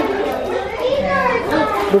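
Young children's voices chattering and playing, high-pitched and continuous.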